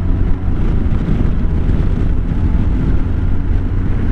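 Wind noise on the microphone of a moving Honda Gold Wing motorcycle: a loud, steady low rush, with the bike's engine and road noise running underneath.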